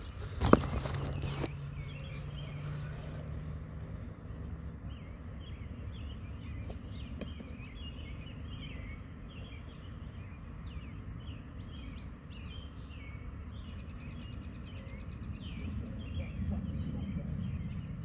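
A single sharp thump about half a second in, followed by about a second of rustling noise, as a disc golf forehand throw is made. After it, small birds chirp repeatedly over a steady low outdoor hum.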